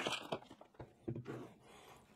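Brief faint rustle of a clear plastic filament bag near the start as the spool is lifted out, then a few faint handling sounds of plastic spools on a table.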